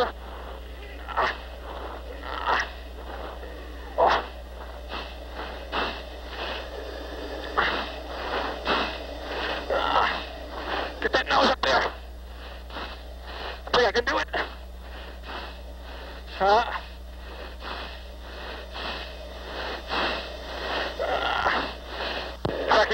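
A fighter pilot's strained breathing and grunts under G, heard through the oxygen-mask microphone during aerial combat maneuvering: short, sharp bursts of breath every second or so, over a steady low hum.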